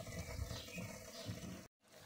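Faint, steady splashing of water from the fish pond's electric water pump outlet spraying into the tank. The sound drops out completely for a moment near the end.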